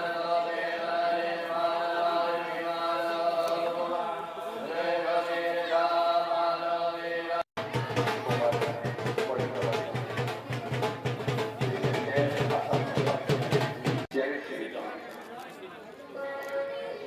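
Devotional chanting in long held notes. About seven and a half seconds in it cuts off, and fast, even percussion takes over: several strokes a second over a low steady hum, from temple drum and bells.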